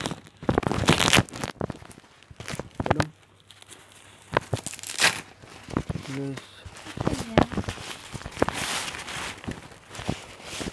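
Black softbox fabric and its plastic wrapping being handled and pulled open, rustling, crinkling and tearing in several bursts. The loudest bursts come about a second in and again around five seconds.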